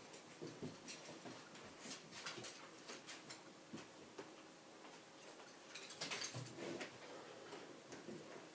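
Faint, scattered light clicks and taps as two Jack Russell terriers move about on the sofa and wooden floor, with a denser run of clicks about six seconds in.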